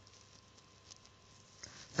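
Near silence: faint room tone and hiss with a couple of soft ticks, and a voice starting right at the end.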